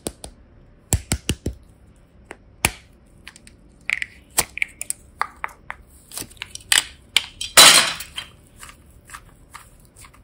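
Hard plastic toy container handled and pried open by hand: a string of sharp plastic clicks and taps, with one louder, longer crackle about three-quarters of the way through.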